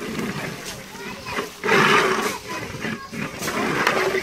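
Indistinct voices of several people talking, with a loud rough burst about halfway through.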